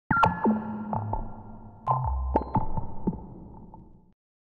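A short synthesized music jingle: a few sharp struck notes that ring and fade over low held bass notes, dying away near the end.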